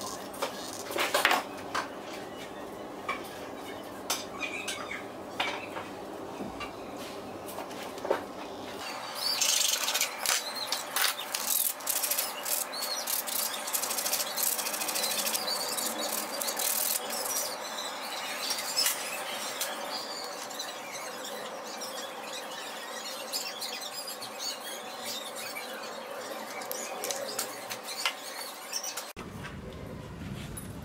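Sandpaper rubbed by hand over a small wooden part in quick, scratchy strokes, starting about nine seconds in and stopping abruptly near the end. Before that, a few light clicks and knocks of handling.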